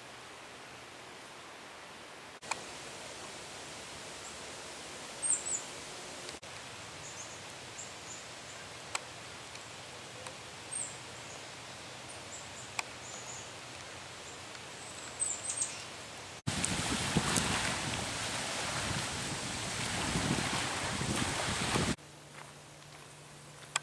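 Small songbirds giving brief, very high chirps, scattered every second or two over a faint outdoor background. Near the end a louder, steady rushing noise takes over.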